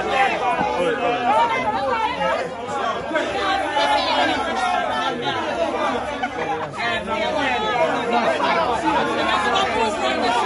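Chatter of several people talking over one another, with a laugh at the start.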